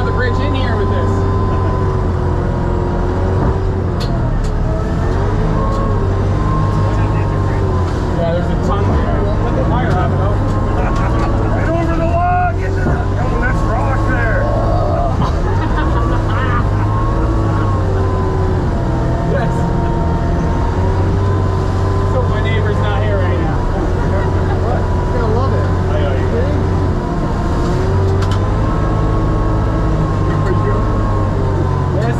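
Sherp amphibious ATV's diesel engine running continuously, its engine note rising and falling slightly as the speed changes.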